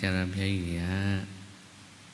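A Buddhist monk's voice intoning a drawn-out phrase in a chanting delivery for about a second, then a pause.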